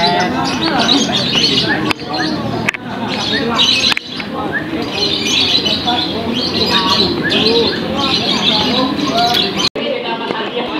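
Many caged songbirds singing at once, a dense overlapping mix of quick chirps and whistled notes, over the chatter of a crowd.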